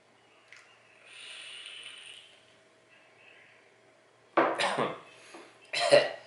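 A vape being drawn on: a soft hiss of air pulled through the atomizer as the coil fires, lasting about a second. Near the end come several loud, short, breathy vocal sounds as the vapor is exhaled.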